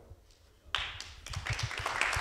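An audience clapping: a few quiet moments, then the clapping breaks out suddenly a little under a second in and keeps swelling.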